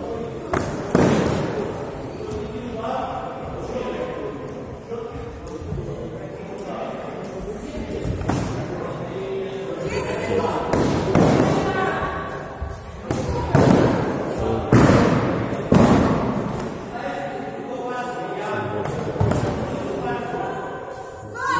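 Foam-padded swords striking padded shields in sparring, dull thuds in a reverberant hall. One hard hit about a second in and three heavy hits in quick succession about two-thirds of the way through.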